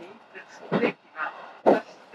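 A person's voice speaking a few short phrases, with brief pauses between them.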